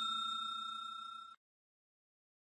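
Subscribe-button notification bell ding sound effect ringing out and fading, cut off abruptly a little over a second in.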